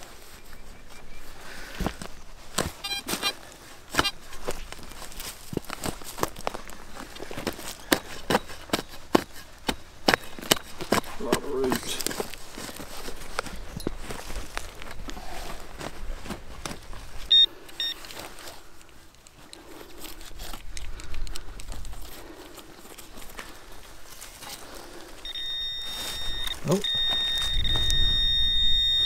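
A hand digging tool chopping and scraping into dry soil, a long run of sharp strikes. Near the end a metal-detector pinpointer probed into the loose dirt gives a steady high buzzing tone, signalling metal in the hole, after a short beep about two-thirds of the way through.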